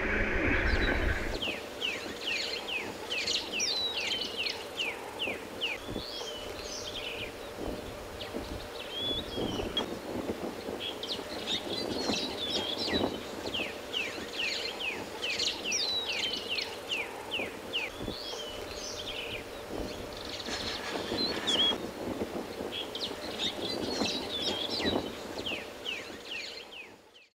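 Several birds calling outdoors: repeated runs of quick, high, downward-slurred chirps, with other short whistled notes between them.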